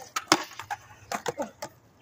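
Skateboard on concrete: a string of sharp clacks and knocks, the loudest about a third of a second in, as a skater rides up and pops the board onto a ledge for a boardslide.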